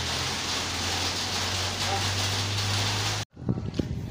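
Steady rain hissing with a low steady hum beneath it. It cuts off abruptly near the end, and a run of short taps follows.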